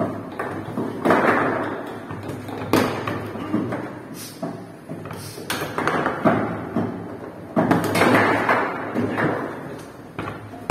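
Foosball table in play: a run of sharp knocks and clacks as the ball is struck by the player figures and hits the table walls, with the rods clattering between shots. The hits come irregularly, several of them loud.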